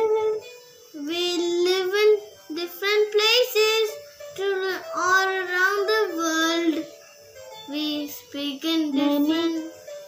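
A young child singing a children's rhyme in several phrases, with short breaths between them.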